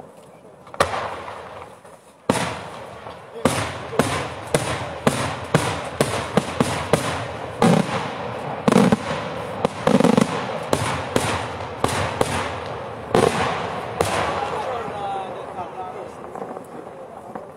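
Daytime aerial fireworks going off: two single loud bangs, then a rapid barrage of echoing detonations, two or three a second, that thins out near the end.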